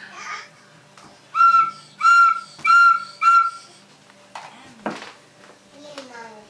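A recorder blown by a baby: four short toots on the same high note, each about half a second long, starting about a second and a half in. A single knock follows near the end.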